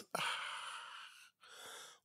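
A man exhaling audibly through the mouth: a soft breath out that fades away over about a second, followed by a shorter, fainter breath.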